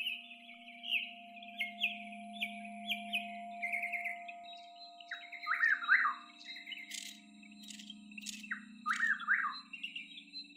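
Sound-art soundscape of isolated bird-like calls: a quick run of short high chirps, then from about halfway lower calls that sweep downward. A steady low hum sits underneath, a thin steady high tone enters about halfway, and a few sharp clicks come in the second half.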